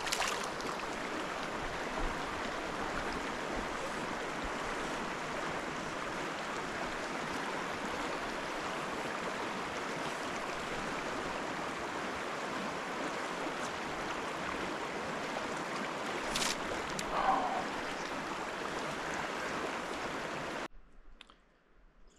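Clear, shallow mountain stream running over a rocky riffle: a steady rush of water, with a single sharp click about sixteen seconds in. The water sound stops suddenly near the end.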